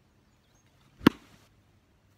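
A wooden baseball bat striking a ball: one sharp crack about a second in, with a brief ring after it. It is a solid, well-struck hit that sends the ball for a home run.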